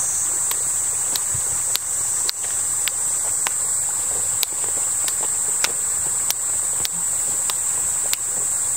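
Steady, high-pitched insect chorus, with finger snaps keeping a steady beat a little under twice a second.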